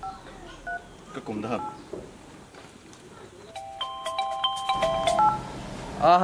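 Smartphone keypad dialing tones: a few short two-tone beeps in the first second, then a quick run of overlapping beeps about three and a half seconds in as a number is dialed.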